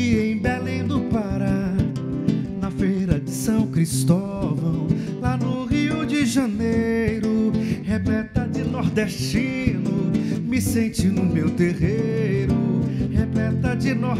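Two acoustic guitars playing an instrumental passage with no singing, the strings plucked with the fingers in quick melodic runs over a steady accompaniment.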